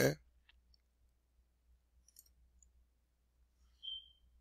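A few faint computer mouse clicks over quiet room tone, with a short high beep near the end.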